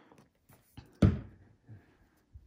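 A plastic glue bottle set down on a tabletop: one dull thunk about a second in, with a few faint ticks of handling around it.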